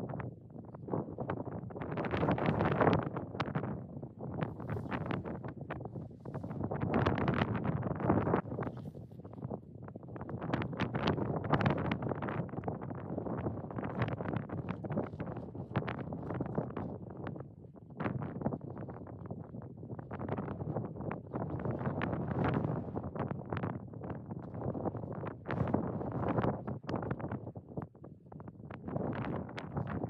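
Wind buffeting the microphone, coming in uneven gusts that swell and ease every few seconds with a rough, crackly rumble.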